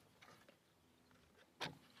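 Near silence, with one brief sharp sound about one and a half seconds in.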